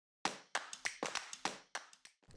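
About eight sharp, quickly fading hits in a quick, irregular rhythm, like hand claps or taps.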